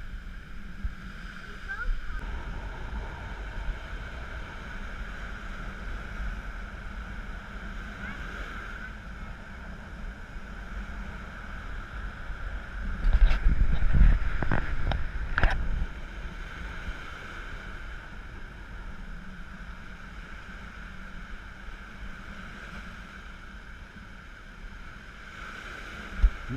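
Surf breaking and washing up a sandy beach, with wind rumbling on the camera's microphone. About halfway through, a louder stretch of rumble and a few sharp knocks lasts a couple of seconds.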